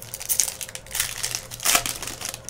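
Foil wrapper of a trading-card pack being torn open and crinkled by hand, with three louder bursts: about a third of a second in, at about one second, and near the end.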